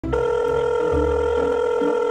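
A steady electronic telephone tone from a smartphone on speaker, a call ringing through before the pizza shop answers.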